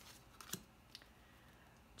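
Tarot cards being handled as one card is moved off the front of the deck: a short crisp snap about half a second in and a softer tick about a second in, otherwise near silence.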